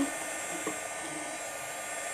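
Handheld heat gun running steadily, a constant airy hiss with a faint motor whine, as its hot air shrinks a sublimation shrink-wrap sleeve onto a tumbler.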